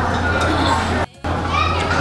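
Background chatter of other diners in a restaurant, with children's voices and a steady low hum. The sound drops out for a moment just past a second in.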